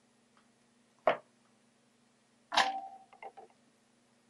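A bare circuit board and soldering tools handled on a wooden table: two sharp knocks about a second apart, the second followed by a brief ring, then a few small clicks as the board is picked up and held for soldering.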